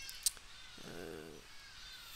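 A quiet pause holding a single sharp keyboard key click about a quarter second in, then a man's short hesitant "uh" near the middle.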